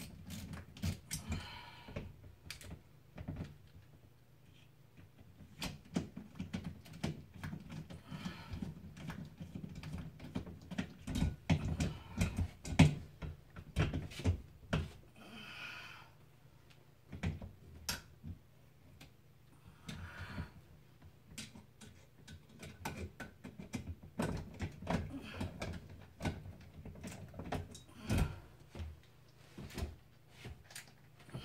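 Irregular clicks, taps and scrapes of hands and a small hand tool working at a ceiling light fixture during a bulb change, coming in clusters, the loudest about halfway through and near the end.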